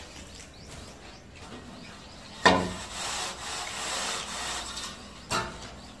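A plasterer's long straight-edge board being handled against a freshly plastered wall: a sharp knock about halfway through, then a couple of seconds of rough scraping against the plaster, and a second knock near the end.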